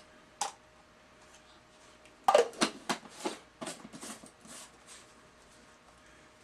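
Plastic shaker cup being shaken: after a single click, a run of short rattling strokes, about three a second, starting about two seconds in and stopping about three seconds later.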